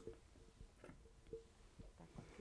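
Near silence with a few faint snips of dressmaking shears cutting mock-up fabric along a paper pattern, over a low steady hum.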